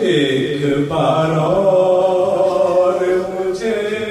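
A man's voice chanting an Urdu lament (noha) through a microphone, in long drawn-out melodic notes with short breaks between phrases.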